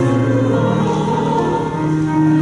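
Choir singing a slow hymn in long held notes, the chords changing every second or so.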